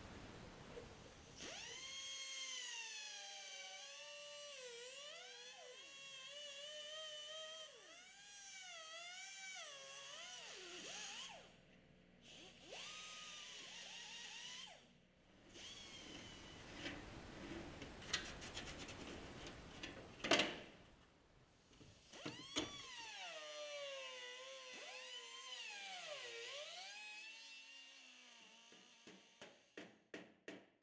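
Air-powered grinder whining at high speed, its pitch sagging and recovering again and again as it bites into metal, with one sharp metallic hit a little after the twenty-second mark.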